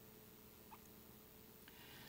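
Near silence: room tone in a pause between spoken phrases.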